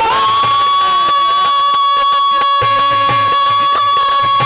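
Live Rajasthani folk devotional music with a ravanhatta and drums: one long high note is held throughout over steady drum strokes.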